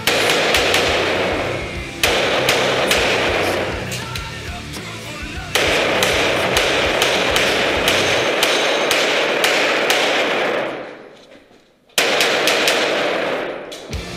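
Grand Power X-Calibur pistol fired in fast strings of shots, with music laid over them. The shooting breaks off for about a second, then one more quick string follows.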